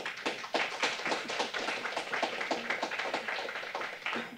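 Audience applauding: many hands clapping densely and steadily, tapering off near the end.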